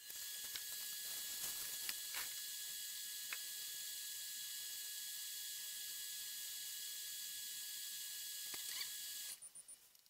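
A steady high hiss that starts abruptly and cuts off suddenly near the end, with a few faint clicks.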